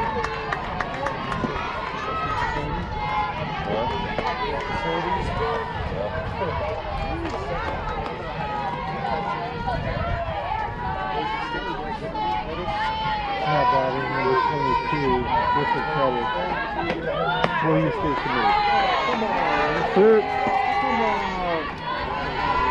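Many overlapping voices of players and spectators calling out and chattering across a softball field, none of it clear speech, with a few louder shouts near the end.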